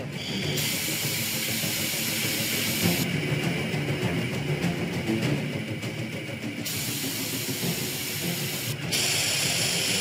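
AFEX automatic fire suppression system on a Liebherr T 282 mining truck discharging in a test: nitrogen-pressurised dry-chemical powder blasts out of the nozzles with a loud, steady hiss. The hiss starts about half a second in and goes on throughout.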